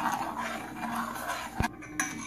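Metal spoon stirring a melting gelatin mixture in a small stainless steel saucepan over a gas flame, with one sharp tap of spoon on pan about a second and a half in.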